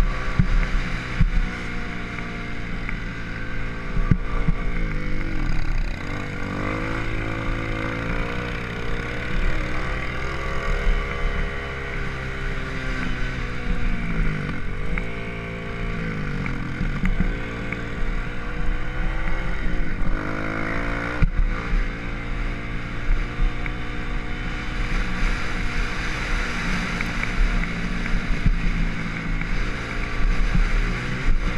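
Dirt bike engine heard from the rider's helmet, revving up and down as it rides a dirt track. The pitch drops and climbs again several times as the bike slows and accelerates, with wind rushing over the microphone.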